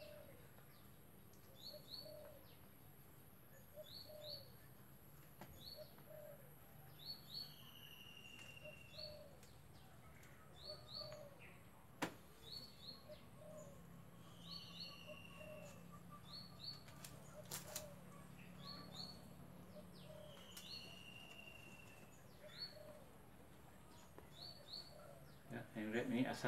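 Faint birdsong in a quiet setting: a pair of short high chirps repeated about every second and a half, a falling whistle every six seconds or so, and a steady series of low hooting notes. A single sharp click sounds near the middle.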